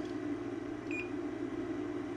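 A Fluke digital multimeter gives one short, high beep about a second in, its probes across a part that reads almost shorted. A steady low hum runs underneath.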